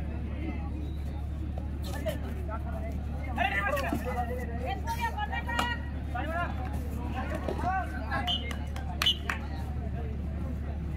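Several voices shouting and calling out over a steady low hum, with a few sharp smacks, the loudest near the end.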